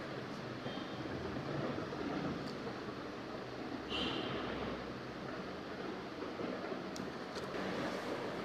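Steady background noise, like room or distant traffic hum, with a few faint clicks and a brief faint high chirp about four seconds in.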